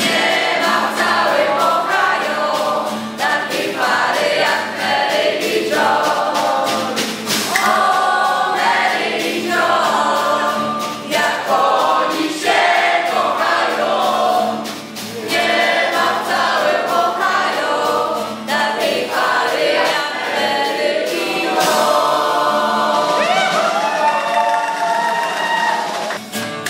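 A group of voices singing a song together, accompanied by strummed acoustic guitar. The singing stops at the very end and the guitar carries on alone.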